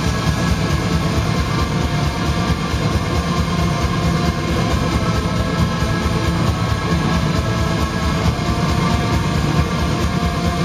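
Black metal band playing live: distorted electric guitars and keyboards over fast, dense drumming, recorded from among the audience.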